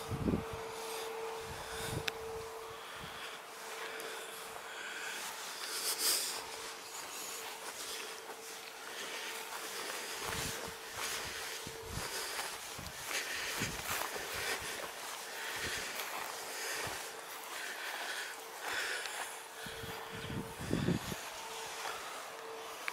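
Wind blowing over the microphone in uneven gusts, with scattered footsteps on grass and a faint steady hum underneath.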